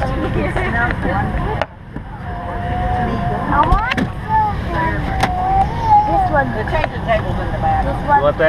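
Steady low rumble of an airliner cabin, which drops out briefly about one and a half seconds in, with a high voice vocalizing without words through the middle and a few small clicks.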